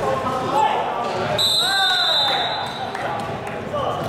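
Voices and basketball bounces echoing in a sports hall; about a second and a half in, a referee's whistle sounds one steady high blast of just under a second, over a shout.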